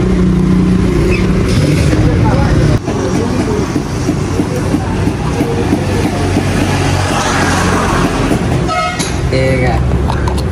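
An engine running steadily with a low hum. The sound changes abruptly about three seconds in, and the engine hum carries on under more general noise. Brief voices come in near the end.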